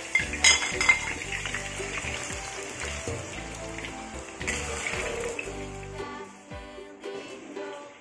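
Background music over clinks of a plate and ladle against a wok near the start as potato chunks go into hot oil, then the hiss of the potatoes deep-frying.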